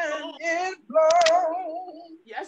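A single voice singing a slow worship song unaccompanied, holding notes with vibrato, in two short phrases with a brief pause just before the middle.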